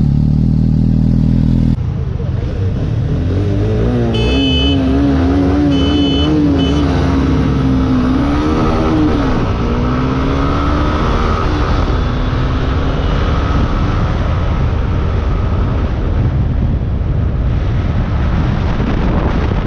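Honda Hornet 2.0's single-cylinder engine pulling hard as the motorcycle accelerates up through highway speed, with wind rushing over the helmet or bike-mounted microphone. A short steady droning tone plays first and stops suddenly about two seconds in, and a few short high beeps sound between about four and seven seconds in.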